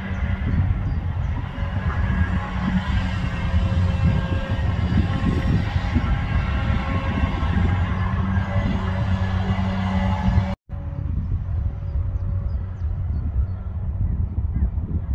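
Diesel engine of a long-reach tracked excavator running steadily with a low hum. The sound cuts out for a moment about ten seconds in, then a duller low rumble carries on.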